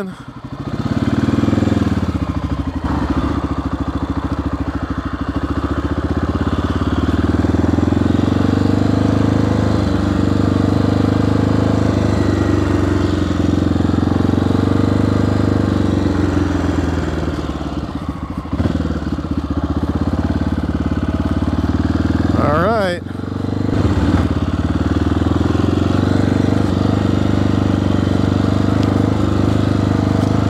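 1994 Honda XR650L's air-cooled single-cylinder four-stroke engine pulling away and running under way as the bike is ridden. The engine note dips briefly twice in the second half.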